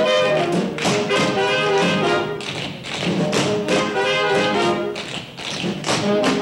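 A pit band plays a brassy swing dance tune, with many sharp taps from the dancers' feet on the stage. It is picked up from the theatre balcony, with no microphones on stage.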